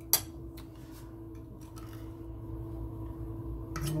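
A few scattered clicks and light scrapes of cutlery against a glass baking dish as cake is cut and lifted out, the first click the loudest, over a steady low hum.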